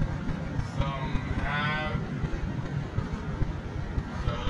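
Steady low rumble of a car driving along a road. Over it come two short voiced calls, one just under a second in and a longer, wavering one a little later.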